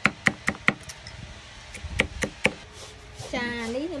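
Cleaver chopping garlic cloves on a wooden chopping board: sharp knocks, four quick ones in the first second and three more about two seconds in. A voice starts speaking near the end.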